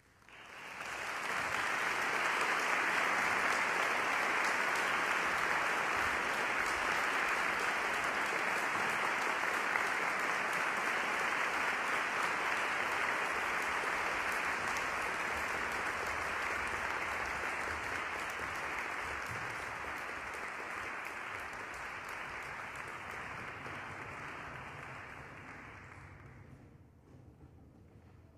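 Audience applauding: it swells quickly in the first couple of seconds, holds steady, then slowly tapers off toward the end.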